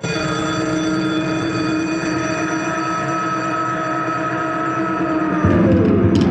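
Electronic music: a drone of several steady held synthesizer tones stacked together. About five and a half seconds in it swells louder in the bass and one tone slides down in pitch.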